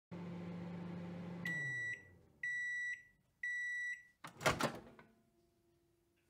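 Microwave oven running with a low hum that winds down and stops as its timer runs out, then three long beeps about a second apart signalling the end of the cycle. The door latch then clunks as the door is opened.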